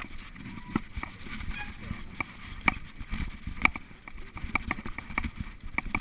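Mountain bike riding down a rough, wet dirt trail: low tyre rumble and wind on the microphone, with sharp rattles and knocks from the bike jolting over bumps, loudest about a third and halfway through.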